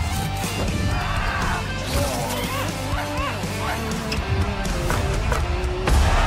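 Trailer music playing, with an animal yelping in short rising-and-falling cries over it for a few seconds in the middle.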